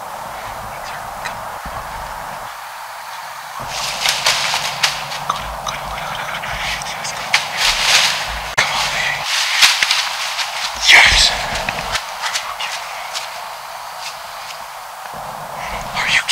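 Dry fallen leaves crunching and rustling under a whitetail buck's steps from about four seconds in to about twelve, with one sharper, louder crack about eleven seconds in.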